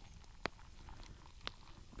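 Hot liquid poured from a stainless steel canteen into a cup, faint, with two sharp clicks about a second apart.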